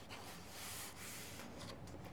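A page of a hardcover picture book being turned by hand: a faint papery rustle, strongest in the first second.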